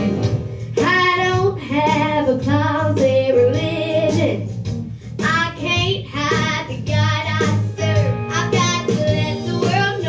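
A young girl singing a gospel song solo into a microphone over instrumental accompaniment with guitar; her voice comes in about a second in, in phrases with wavering, held notes.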